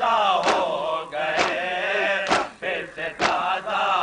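Men chanting a noha together while the crowd's hands slap their chests in matam, in a steady beat about once a second that cuts through the singing.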